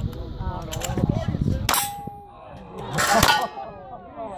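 Two gunshots at steel targets, each with a metallic clang as the steel is hit. The first comes a little under two seconds in and leaves a short clear ringing tone. The second, louder, follows about a second and a half later.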